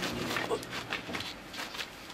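A man's low, drawn-out groan that stops a little over a second in, with scattered light knocks and shuffling.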